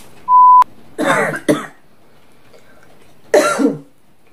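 A short, loud steady beep, then a woman coughing and clearing her throat in two bouts, about a second in and again near the end; her throat is dry from talking.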